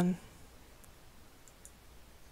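Three faint computer mouse clicks, the last two close together.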